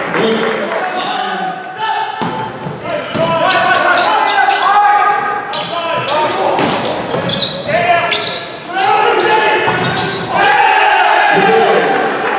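Indoor volleyball rally: sharp slaps of the ball being served, passed and hit, mixed with players' shouted calls, echoing in a large gym hall.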